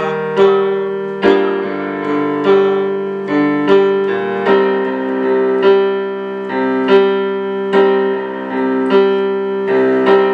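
Piano keyboard playing a slow chord progression, both hands together: a chord struck at an even pace a little faster than once a second, each one ringing into the next. It is a deliberately slow run-through of the progression.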